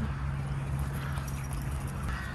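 Quick, rhythmic footfalls of dogs galloping over grass close by, over a steady low rumble.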